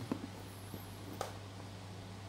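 A plastic-wrapped cardboard box being turned over in the hands, giving one light click about a second in, over a low steady hum.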